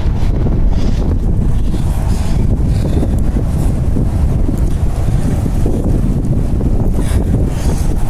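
Strong gusty wind of up to about 50 mph blowing across the phone's microphone: a loud, continuous low rumble of wind noise.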